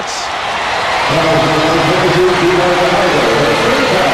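Arena crowd at a basketball game roaring and cheering, with a held, chant-like pitched sound rising over the roar from about a second in until near the end.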